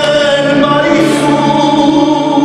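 Men's voices singing a Romanian Christmas carol (colindă) in long held notes, the melody stepping up to a higher note about a second in.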